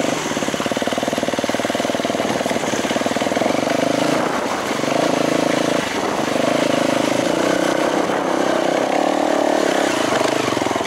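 Dirt bike engine running under throttle while riding up a dirt trail climb. The engine note dips briefly twice, about four and six seconds in, then picks up again.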